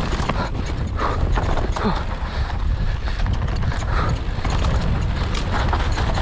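Mountain bike rolling fast down a dirt forest trail: a steady low rumble of tyres on dirt with constant rattling clicks and knocks from the bike over the rough ground. The rider gives short grunts about two seconds in.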